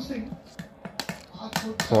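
Steel spoon clinking and scraping against a stainless steel plate of curry: several short sharp clicks in the second half.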